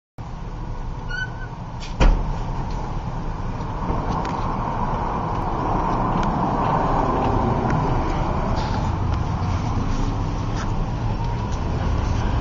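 Steady street traffic noise, with one sharp thump about two seconds in.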